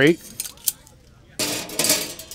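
Stainless steel grill grate clinking against the body of a portable stainless steel grill as it is fitted into the top: a couple of light clicks, then about a second and a half in a short metallic scrape and clatter as it drops into place.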